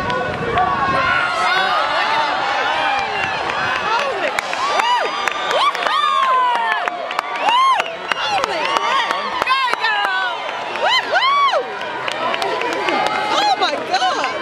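Large crowd of spectators cheering and shouting as racers run down a steep hill, with a steady babble of voices. Loud individual whoops and yells stand out over it, several in the second half.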